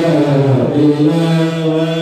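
A man's voice chanting an Islamic prayer through a microphone and PA, melodic and sliding between notes, then holding one long steady note through the second half.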